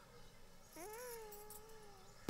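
A baby's single faint cry, about a second long, rising sharply in pitch and then sliding gently down.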